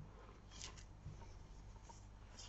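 Faint soft rustling of wool yarn being drawn through the edge stitches of a knitted seam as it is sewn by hand.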